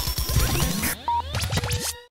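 Radio station ident jingle: electronic music with turntable-style scratching and swooping sweep effects. It thins out about a second in and trails off in lighter sweeps.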